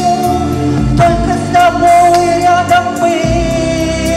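A woman singing a Russian-language pop song into a microphone over instrumental accompaniment, holding long drawn-out notes.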